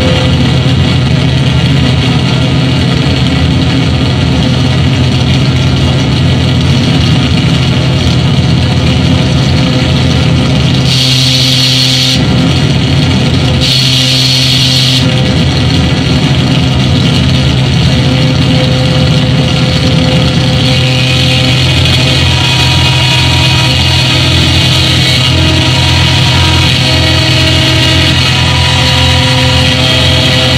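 Harsh electronic noise music from a mixer and chain of effects pedals: a loud, steady low drone under a dense wash of distorted noise, broken twice in the middle by bright hissing bursts.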